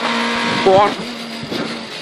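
Rally car engine heard from inside the cabin, running hard under load with a steady, high note; about a second in the note and level dip slightly, then hold.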